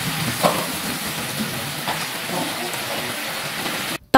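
Reduced sweet and sour sauce with diced carrots bubbling and sizzling steadily in a pan, stirred with a silicone spatula.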